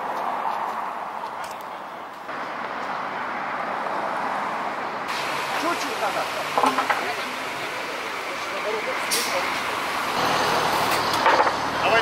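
Steady road traffic noise with faint voices in the background; in the last two seconds a low engine sound joins in as a car is eased onto the transporter's ramp.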